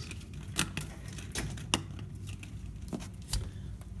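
Scattered sharp clicks and light knocks from handling, as the phone is carried toward a door, over a low steady hum.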